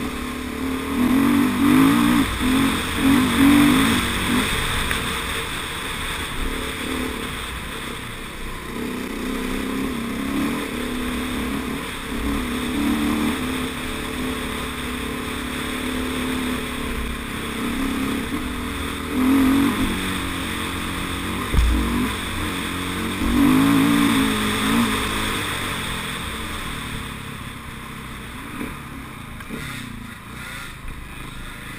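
Dirt bike engine heard from on board the moving bike, the throttle opened and closed repeatedly so the note surges up several times and drops back, over a steady rushing noise. A single sharp thump comes about two-thirds of the way through.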